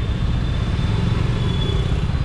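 Motorcycle engine running steadily at low speed in dense traffic, with the low rumble of surrounding car and scooter engines.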